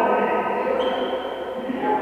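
Indistinct voices of volleyball players calling out in a large sports hall.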